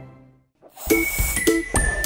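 Music fades out, and after a brief gap a bright, chiming logo jingle starts: several sparkly dings with ringing high tones and quick upward swoops in pitch.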